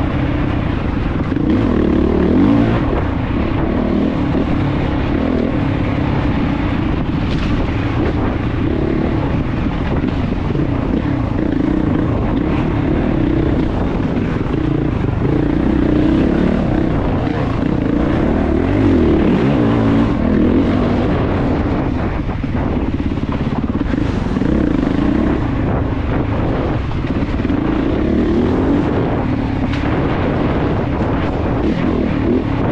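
Off-road dirt bike engine heard from on board, revving up and down continuously as the rider works the throttle on a rough trail.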